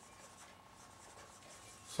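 Faint dry-erase marker strokes on a whiteboard as a word is written, over quiet room tone with a thin steady hum.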